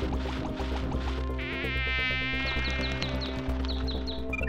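Cartoon background music with a buzzing sound effect over the first second or so, then a wobbling electronic tone and a quick run of short, high, rising chirps near the end.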